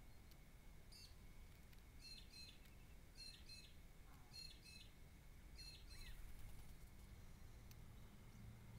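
Faint bird calls: short high notes, each sliding down then holding briefly. They come singly once and then in pairs, about one pair a second.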